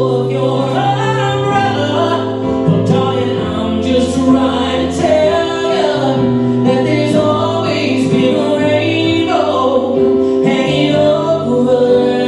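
Male vocalist singing a song live over long, held backing chords.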